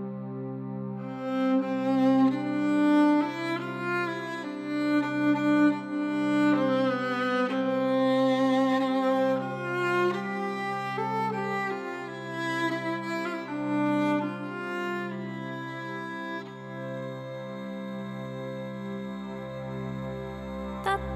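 Alpine folk instrumental: a violin melody over a steady, pulsing bass line, played by a trio of violin, zither and Styrian button accordion (Steirische Harmonika).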